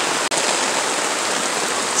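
Heavy rain falling steadily, with runoff pouring off a tarp and splashing into a full rain barrel. The sound drops out for an instant about a third of a second in.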